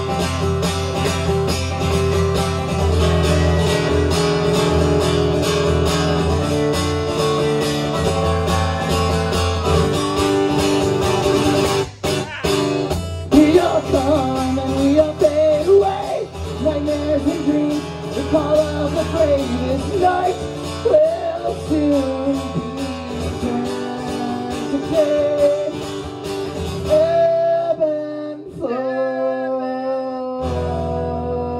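Live solo acoustic guitar playing. About twelve seconds in it breaks off briefly, then a wavering lead melody runs over the guitar until the playing thins out near the end.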